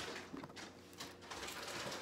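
Plastic Lego bricks being handled and pressed together: a sharp click at the start, then a few faint small clicks and rustles.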